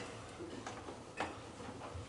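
Faint, sharp ticks, about one every two-thirds of a second, over a low room hum.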